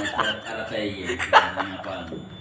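Quiet chuckling laughter from people, mixed with low indistinct talk.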